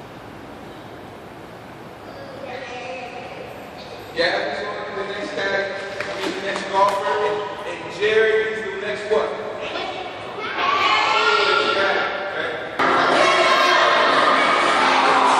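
Voices talking and calling out in a large, echoing gym, after a quiet first couple of seconds. Near the end a louder, fuller sound starts suddenly.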